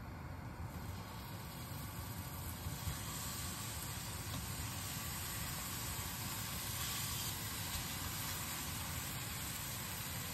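Tomato slices sizzling in a hot nonstick frying pan on a gas hob: a steady frying hiss that fills out about a second in as the slices go into the pan.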